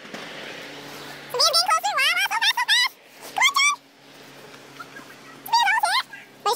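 High-pitched squeals from people climbing, in wavering wordless bursts: a long run of them about a second and a half in, a short one in the middle, and another near the end.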